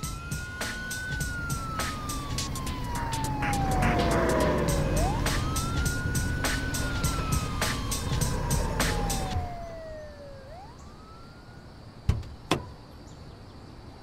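An emergency-vehicle siren wails, each cycle rising quickly and falling slowly, over music with a steady beat. The music cuts off suddenly about two-thirds of the way through, and the siren carries on more faintly. Two sharp knocks come near the end.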